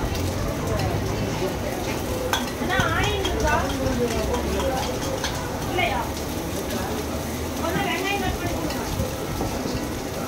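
Noodles frying in a steel wok over a gas burner, a steady sizzle with the burner's low rumble under it.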